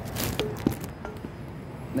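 Handling noise: a brief rustle just after the start, then a single sharp knock about two-thirds of a second in, as things are moved about and set down close to the microphone.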